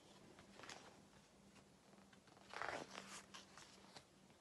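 Near silence, broken about two and a half seconds in by a brief rustle of a picture book's paper page being turned.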